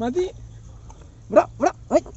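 A dog barks three times in quick succession near the end, short sharp barks about a third of a second apart, each rising in pitch.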